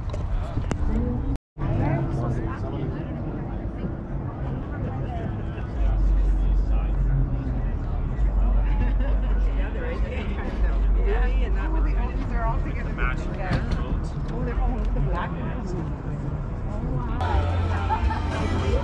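Indistinct voices of people talking nearby over a low, uneven rumble. The sound cuts out completely for a moment about a second and a half in.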